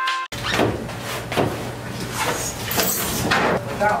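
Background music cut off abruptly, then irregular scraping, sliding and knocking as a large hot tub shell is pushed over rolling pipes and out through a doorway, with a steady low hum underneath.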